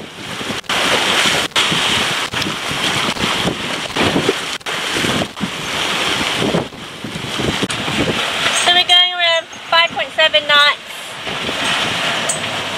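Wind buffeting the microphone and water rushing past the hull of a sailboat under way, a steady rushing noise. A voice speaks briefly about nine seconds in.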